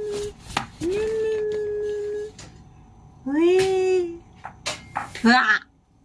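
A young child's voice making three long drawn-out vocal sounds, each held over a second at a steady, fairly high pitch, then a short quick squeal near the end, with a few light taps in between.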